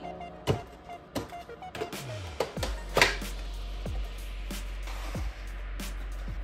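Background music, over which cardboard and plastic figure packaging is handled: a dozen short taps, knocks and rustles as an inner cardboard box is slid out of its retail box. The loudest knock comes about three seconds in.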